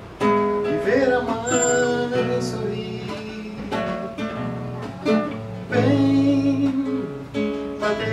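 Nylon-string classical guitar played solo: chords struck and left to ring, with picked notes between them, in an instrumental passage of a song.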